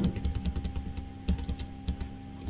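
Computer keyboard typing: a quick, irregular run of key presses, over a faint steady hum.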